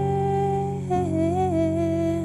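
Slow, sparse song: a woman's voice holds a long note, then about a second in steps down to a slightly lower note that rises and falls once, over a sustained, dull piano with its treble cut.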